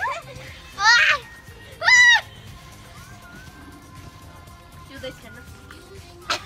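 Young girls shrieking with laughter: two loud, high-pitched squeals, about one and two seconds in, each lasting a fraction of a second, with a little fainter laughter and chatter around them.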